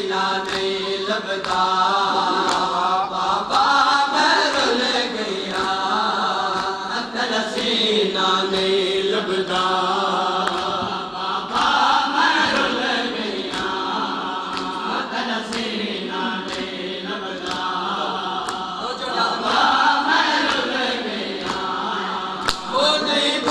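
A nauha (Shia lament) chanted in a steady melody by a reciter with mourners joining in, over regular sharp slaps of chest-beating (matam) that keep time with the chant.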